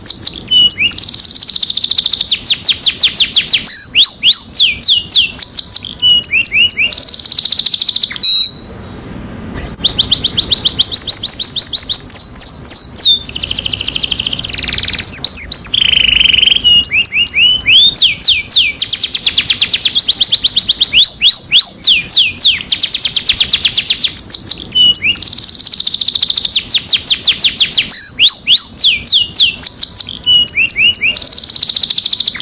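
Yellow domestic canary singing a continuous song of rapid repeated trills and rolls, each phrase a fast run of high, quick notes before it switches to the next. The song breaks off briefly about eight seconds in.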